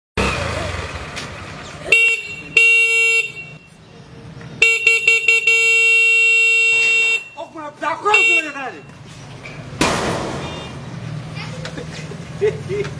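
Motorcycle's electric horn honked four times: a short toot, a half-second toot, a long blast broken by several quick toots, then one more short toot. A man's voice is heard between the last honks and near the end.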